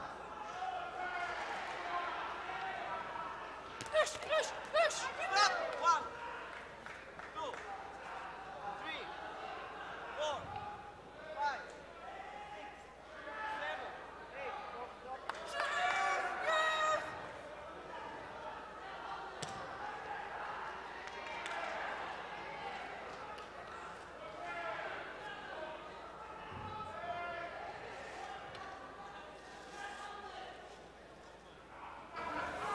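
Boxing gloves landing punches with sharp smacks, a quick cluster of several about four to six seconds in, over shouting from coaches and spectators.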